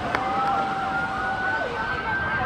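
Several police car sirens wailing at once, their slowly rising and falling tones overlapping, from a line of cruisers driving slowly past.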